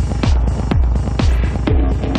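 Techno with a four-on-the-floor kick drum at about two beats a second, over a steady low bass and ticking hi-hats. A held note enters in the mids near the end.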